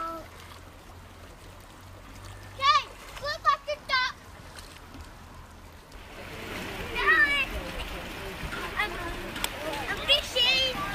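A small child's short high-pitched calls, four in quick succession near the middle and more later, over the steady rush and splashing of a shallow creek. The water grows louder about six seconds in.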